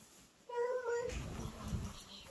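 A short, high-pitched meow-like cry about half a second in, followed by a low rumble of movement.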